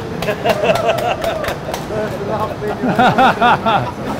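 Men laughing heartily, with a quick run of 'ha-ha' bursts in the last second and a half, after a few sharp hand claps near the start.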